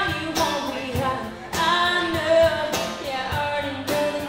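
A woman singing a song live, accompanied by strummed acoustic guitar and a steady cajón beat, with some long held notes.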